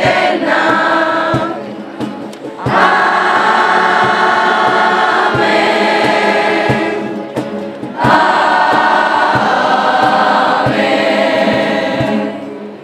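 A large group of young voices singing a devotional song together in unison, in long phrases with short pauses about two seconds in and again around seven seconds. A soft, regular low beat runs underneath.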